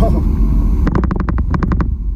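Steady low road and engine noise inside a moving car's cabin. About a second in, a quick run of roughly a dozen sharp clicks lasts for about a second.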